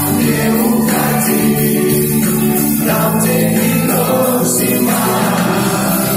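A live pop song: a band playing under several voices singing together in long held notes.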